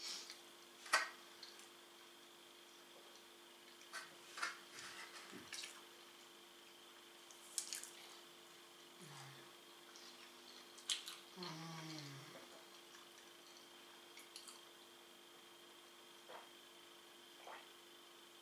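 Faint, close-up eating sounds of a person chewing pizza: scattered wet mouth clicks and lip smacks. A short closed-mouth hum comes twice, briefly about nine seconds in and more fully about eleven seconds in. A faint steady hum sits underneath throughout.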